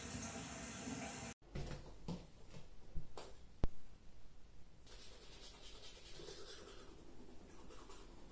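A steady hiss for the first second and a half, then small clicks and taps as a toothpaste tube and toothbrush are handled, with one sharp click about three and a half seconds in. After that comes the soft scrubbing of a manual toothbrush on teeth.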